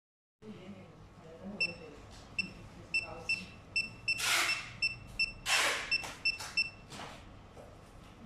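An LCD screen tester beeping as its keys are pressed: about a dozen short, identical high beeps, irregularly spaced, a few a second. Two louder rustling swishes of handling come in the middle.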